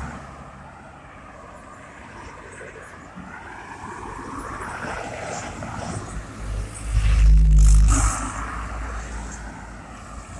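Cars and vans passing close by on a two-lane road, their tyre and engine noise swelling and fading one after another. The loudest pass comes about seven seconds in, heavy in the low end.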